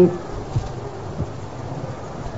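Pause between phrases of a spoken sermon: steady hiss and low hum of an old recording, with a few faint low knocks.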